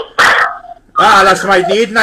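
A man's loud voice in short vocal bursts without clear words: a brief loud cry near the start, then from about a second in a longer drawn-out call that bends up and down in pitch.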